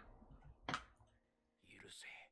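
Faint anime episode soundtrack: one sharp click about two-thirds of a second in, then a character's brief spoken line near the end.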